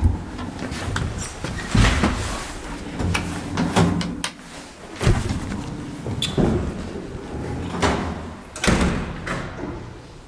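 Doors of a KONE hydraulic elevator being opened and closed as people step out of the car, with footsteps: a string of about eight irregular knocks and clunks spread over ten seconds.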